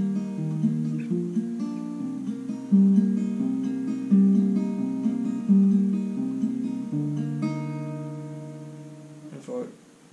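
Capoed steel-string acoustic guitar fingerpicked in a slow arpeggio pattern, one string at a time over a bass note, the notes ringing into each other. Near the end the last chord is left to ring and dies away.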